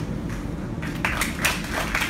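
Small crowd of spectators clapping, starting about a second in over a low room murmur.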